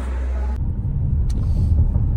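Low, steady road rumble inside a moving car's cabin, cutting in abruptly about half a second in after a quieter room hum.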